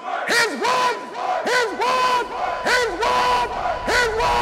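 Men's voices shouting in a chant: a quick string of short calls, each swooping up and then held on one note.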